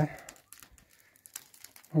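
Faint crunching and crackling of dry grass underfoot: a scatter of small, sharp clicks between words.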